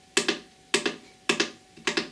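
Push-button presses on the TSA timer's keypad: four sharp clicks, evenly spaced about half a second apart, as the menu is stepped through option by option.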